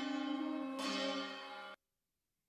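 Music track with deep, bell-like struck tones ringing out, struck again a little under a second in, then cut off abruptly near the end.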